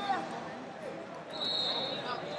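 Wrestling shoes squeaking and scuffing on the mat as two wrestlers shuffle in a standing tie-up, with one steady high squeak near the end.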